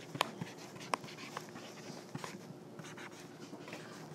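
Stylus writing on a tablet's glass screen: faint scratching with a few sharp taps, strongest about a quarter of a second and a second in, over quiet classroom room noise.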